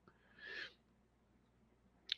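Near silence, with one brief faint breath-like sound, such as an intake of breath, about half a second in.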